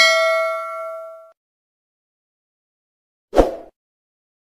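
A bright metallic ding, a bell-like chime that rings and fades away over about a second. About three seconds later comes one short thump.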